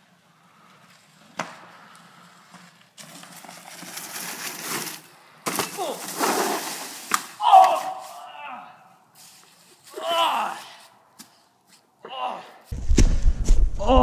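Mountain bike rolling and clattering over dry fallen leaves at a log, with a sharp knock about a second and a half in and the loudest rustle and rattle near the middle. Short shouts of 'oh' from riders come three times in the second half.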